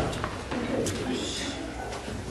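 Indistinct low voice murmuring, with a single sharp click just under a second in.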